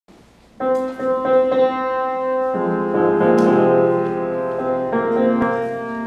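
Piano playing the introduction to a Korean art song for baritone: a few struck, repeated notes, then fuller chords with lower notes joining about two and a half seconds in.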